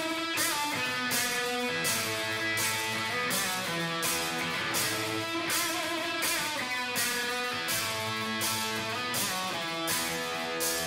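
Live rock band playing a song, led by electric guitar playing a moving melodic line over a steady beat of about two hits a second.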